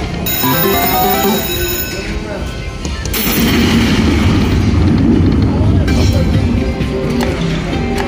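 Video slot machine playing its electronic ringing chimes and music as the reels spin, with a cluster of bright tones in the first two seconds. From about three seconds in a denser wash of casino background noise and voices takes over.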